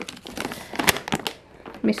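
Plastic packaging of cat food and treats crinkling and rustling as it is handled in a cardboard box, with a few sharp ticks. It dies away about a second and a half in.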